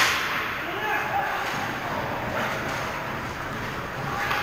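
Ice hockey play at the goal: a sharp crack of a hit at the start, then skates scraping the ice and players' voices calling out.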